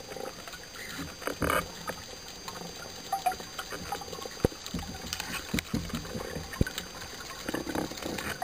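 Underwater sound of a speared fish being handled on a speargun shaft: a steady wash of water with scattered small clicks and pops, and two sharp knocks, one about halfway through and one near the end.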